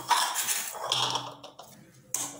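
A metal potato masher pressed repeatedly into soft dough on a plastic cutting board, with metal knocking and scraping against the board. The strokes come in quick succession for about a second and a half, then ease off.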